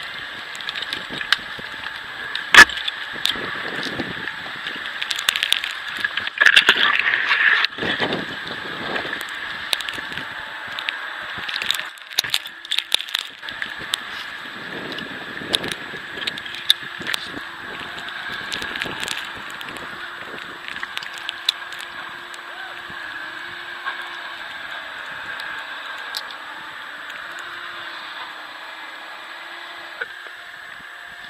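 A tree climber handling a climbing rope and gear among snowy fir limbs: rustling and scraping, with scattered sharp clicks and jangles of hardware, the sharpest about two and a half seconds in, over steady background noise.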